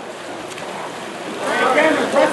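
Water polo players splashing and churning the water in a pool. About a second and a half in, voices start calling out over the splashing, and it gets louder.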